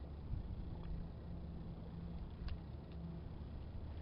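Low, steady outdoor rumble, with a faint hum that comes in about a second in and fades before the end, and a couple of faint clicks.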